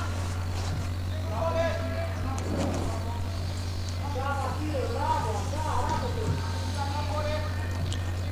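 Open-air football match sound: faint, distant voices of players calling out on the pitch, over a steady low hum.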